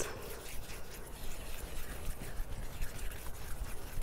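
A gloved hand pressing and spreading wet, thick-batter concrete mix (sand and Portland cement, tinted red) into a plastic form: quiet, irregular wet scraping and squishing.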